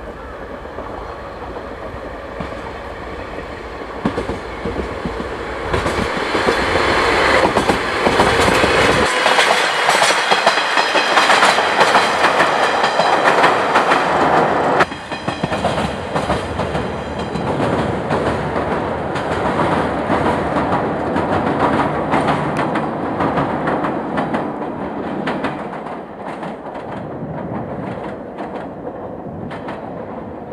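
Diesel-hydraulic DE10 locomotive hauling two new railcars passing close by, its engine running under load and its wheels clattering over the rail joints, growing louder to a peak. About halfway through the sound drops sharply, giving way to a fainter, more distant train rumble.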